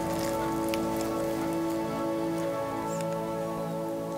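A wooden spoon scooping into soft, cream-topped baked French toast, giving scattered soft wet clicks, over steady background music.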